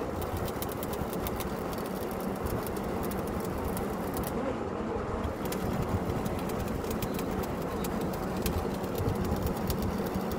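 Truck-mounted borewell drilling rig running steadily: a continuous engine drone with a rapid, irregular clicking over it.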